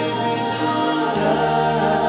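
A mixed group of male and female singers holding sustained notes together in harmony, moving to a new chord about a second in.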